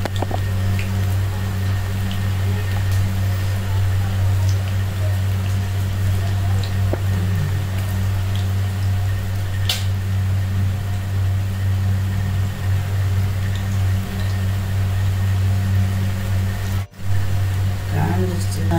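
Ragi-and-greens pakoda deep-frying in a kadai of hot oil, a steady sizzle. A loud steady low hum sits under it throughout and is the loudest sound. It cuts out briefly near the end.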